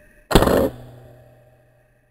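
A single shot from a scoped air rifle: one sharp report about a third of a second in, followed by a low ringing tail that fades out over about a second.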